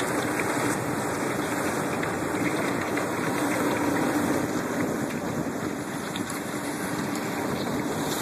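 A boat's engine running steadily with a constant rush of water and ice as it moves through broken plate ice, with light crackling of ice pieces.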